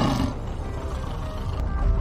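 Background music, with the tail of a lion's roar sound effect fading out right at the start. Near the end a deep low rumble swells: the sound effect of a cave-in.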